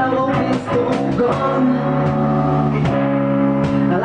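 A small band playing a rock song live in a room: bass guitar, electric guitar and cajón, with a singer at a microphone. Held chords ring under regular sharp cajón strikes.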